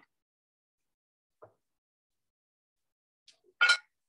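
Near silence broken by a faint tick about a second and a half in and a short, sharp clink near the end: kitchenware being handled at the stove.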